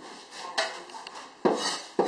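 A kitchen cleaver strikes a wooden cutting board as food is cut: two or three sharp, separate knocks about a second apart.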